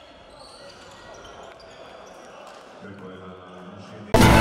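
Faint game sound from a basketball court in a sports hall: the ball bouncing on the wooden floor and players' voices.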